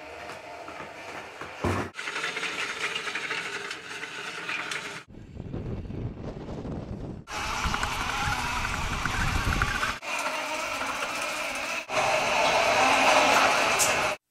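Small tracked robot running on its electric drive motors and tracks, first climbing steps, then driving through shallow water with water swishing around it. The sound changes abruptly several times, and the last few seconds are the loudest.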